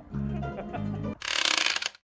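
Background music with a plodding bass line for about a second, then a short bright hissing transition effect that cuts off suddenly near the end.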